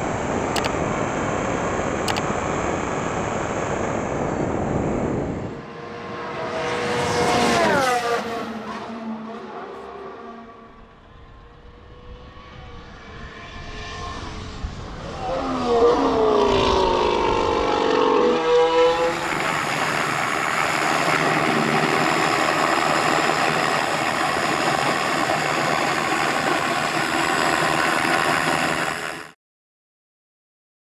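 Mercedes W14 Formula 1 car's turbocharged V6 hybrid engine on a wet track. It runs steadily at first, then passes by twice, about seven and sixteen seconds in, with the pitch sweeping down each time. It then holds a long steady stretch at high revs that cuts off suddenly near the end.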